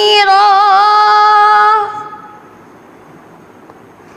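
A boy's voice chanting Quran recitation (tilawat), holding a long, wavering melodic note that ends about two seconds in. After it only a steady low hiss remains.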